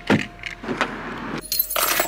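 Car keys jangling while getting into a car, mixed with clicks and rustling. There is a sharp click right at the start and a louder burst of rustling noise near the end.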